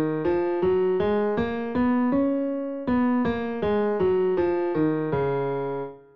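Piano playing a D-flat Mixolydian scale an octave below written pitch, one note at a time at about two and a half notes a second. It climbs one octave to the top D-flat, holds it briefly, then comes back down to the low D-flat, which is held and released near the end.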